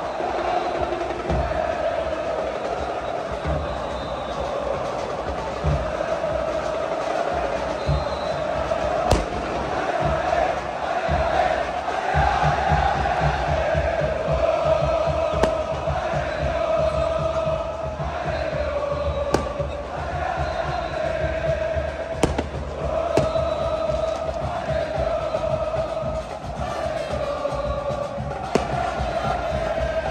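A massed crowd of football ultras singing a chant in unison. From about twelve seconds in a steady drumbeat backs the chant, and a few sharp bangs stand out above it.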